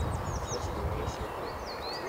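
A small songbird singing a series of quick, high chirps that sweep in pitch, over a low outdoor rumble.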